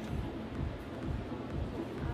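Steady, low background noise of an indoor ice arena, with no distinct event standing out.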